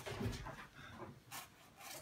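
A sheet of paper rustling in a few short, faint bursts as it is handled and opened.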